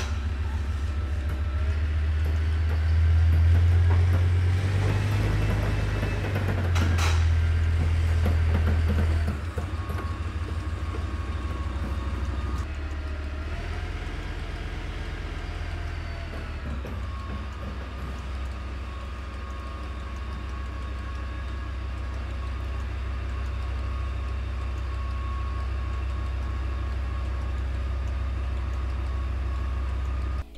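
Heavy tracked tank's engine running: a deep, steady rumble with a higher whine that rises and falls, loudest in the first nine seconds and then settling lower.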